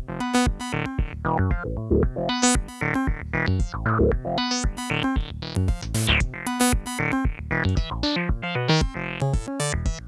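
Eurorack modular synthesizer playing a fast sequenced pattern of short pitched electronic notes from a Noise Engineering Basimilus Iteritas Alter, its pitch sequenced by a Mimetic Digitalis. The brightness of the notes shifts from hit to hit as the module's knobs are turned live.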